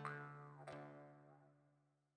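Jaw harp plucked twice, about 0.7 s apart. Each twang rings on the same low drone with a downward-sliding overtone, then dies away to nothing.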